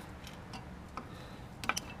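A few faint, scattered clicks and light taps over a low background hum, with two close together near the end.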